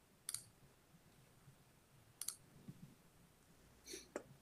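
Three faint, sharp clicks over near silence, about two seconds apart: a computer mouse being clicked while a screen share is started.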